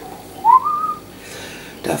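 A short whistled note about half a second in, gliding upward and lasting about half a second.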